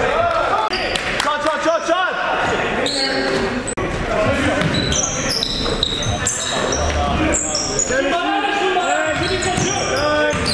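Live basketball game sound on a gym floor: the ball bouncing, sneakers squeaking in short high chirps through the second half, and players' voices calling out.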